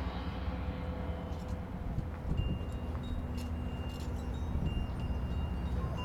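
Marching band's front-ensemble percussion playing a quiet passage of sustained bell-like tones over a low stadium rumble.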